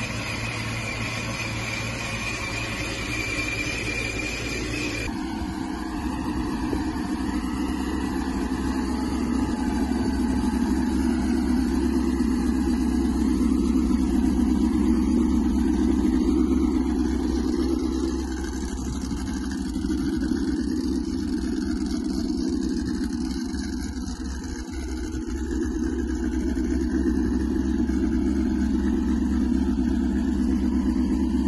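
ProCharger F1A-supercharged 4.6-litre V8 of a Mustang SVT Cobra 'Terminator' running at idle, its level swelling and easing gently. A steady high tone over the first five seconds stops abruptly.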